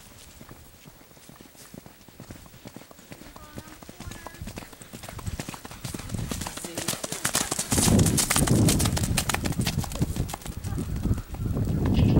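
Hoofbeats of a horse loping over dry pasture ground, a quick run of thuds that grows much louder as the horse comes up close and passes about eight seconds in.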